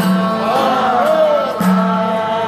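Greek folk band playing live, with violin, laouto, accordion and tambourine together and a man singing; the melody slides downward in the middle, over a low note and beat struck about every second and a half.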